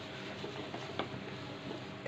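A steel spoon stirring hot milk in a steel pot, with a couple of light clinks against the pot about a second in, over a steady low hiss.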